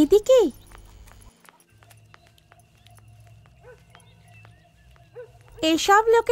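A character's voice speaks briefly at the start and again near the end. In between is a few seconds of faint, quiet background ambience.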